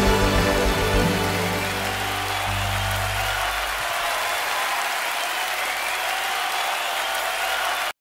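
A live band's closing chord rings out and dies away over the first three or four seconds, followed by steady audience applause that cuts off suddenly just before the end.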